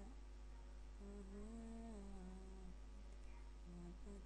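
A person humming a slow tune quietly, with held notes that rise and fall gently: one phrase starting about a second in and another beginning near the end. A steady low hum runs underneath.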